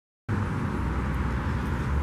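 Steady outdoor background noise of road traffic, starting abruptly about a quarter second in.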